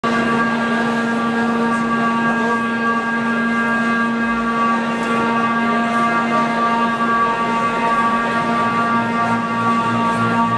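A sustained drone chord of several steady tones, held without change, as an intro to the live set. About nine seconds in, a low note begins pulsing at roughly four beats a second.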